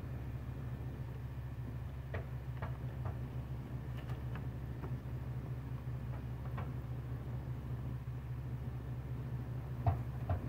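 A steady low hum with a few light clicks and knocks scattered through it, and a sharper knock near the end.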